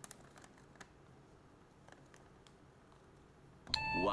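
Faint, sparse little crackles and clicks of a paper receipt being handled. Near the end, a sudden loud burst of music with a voice.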